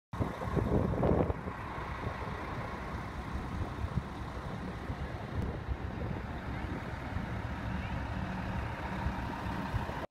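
Bus and vehicle engines running in a steady low rumble of traffic noise, briefly louder about a second in.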